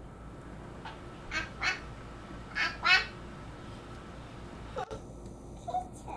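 A voice imitating a duck, "quack quack", said twice in quick pairs after one faint first call.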